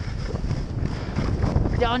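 Wind buffeting the microphone of a camera worn by a skier moving fast through powder, a steady low rumble with the hiss of skis sliding over snow. A man's voice starts near the end.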